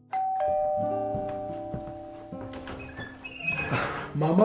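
Doorbell chime ringing: a sequence of struck tones, each ringing on and fading, falling in pitch note by note. A short burst of noise follows near the end.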